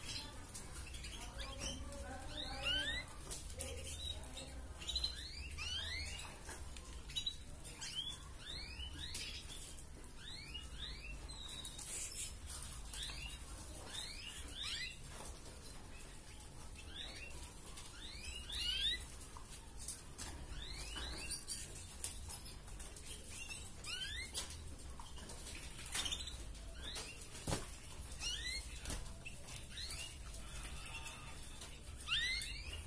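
Red canary chirping: repeated short rising notes in small bursts of a few at a time, with occasional sharp clicks over a low steady hum.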